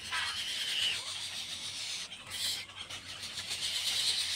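Egret nestlings begging in the nest: a thin, rapid, high-pitched chatter.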